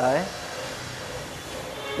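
A single spoken word, then a steady faint hiss of background noise with no distinct event in it.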